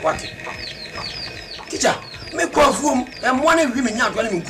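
Small birds chirping in the background, one short falling note repeated several times a second through the first second and a half. A man's voice then speaks through the second half.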